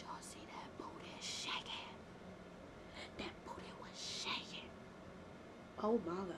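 Quiet whispering and breathy hissing from a person's mouth, in two short spells, with faint lip clicks, then a brief voiced sound just before the end.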